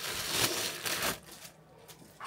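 A small paper mailer package being torn open and handled, crinkling and rustling for about a second before dropping to a few faint clicks.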